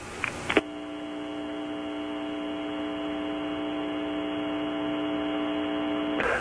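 Steady electrical hum with several evenly spaced overtones, as on an old radio or phone line. It starts about half a second in and grows slightly louder.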